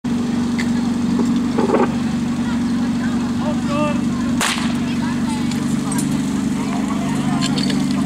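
Portable fire pump engine running steadily. A single sharp crack about four and a half seconds in is the start signal for the fire-attack run.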